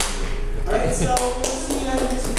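Shoes stepping and tapping on a hardwood floor: several quick taps and light thuds as swing kick-step, kick-run footwork is danced.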